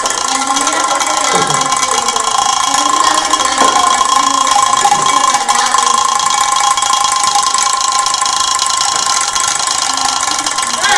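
Small battery-powered electric motor running steadily inside a toy built from two tin cans, a constant whir with a fast metallic rattle from the cans.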